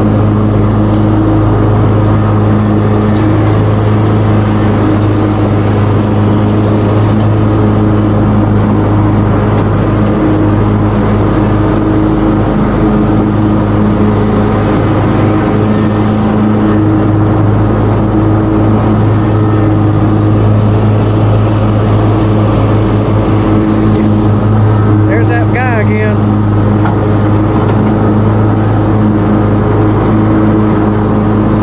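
John Deere Z-Trak zero-turn mower running steadily while mowing, a loud, even engine hum with no change in pace. About 25 seconds in, a brief wavering higher-pitched sound rises over it.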